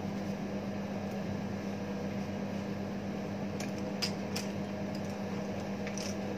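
Steady hum of room ventilation, a fan or air-conditioning motor, holding one constant low tone. A few faint clicks come about four seconds in.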